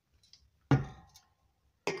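A single sharp metal knock with a brief ring, about two-thirds of a second in, as a greased rear axle is pushed home through the wheel bearing of a BSA Bantam D7 hub. A few faint clicks come before and after it.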